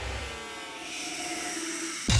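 Intro sound design under a logo animation: a quieter, scraping-sounding sweep with gliding tones between the heavier bass hits of the intro music.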